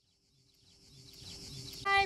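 Silence, then faint outdoor ambience fading in, with a high-pitched insect chirring; a woman's voice begins right at the end.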